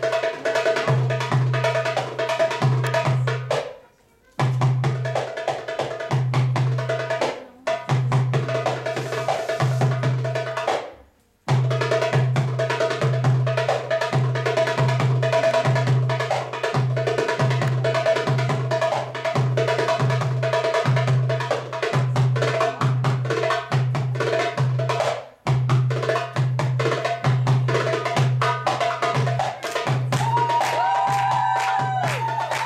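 Darbuka (goblet drum) solo: fast, dense patterns of deep doum strokes and sharp rim strokes. It stops dead several times, about four seconds in, near eight, briefly silent just before the twelfth second, and again near twenty-five seconds, then picks up again each time.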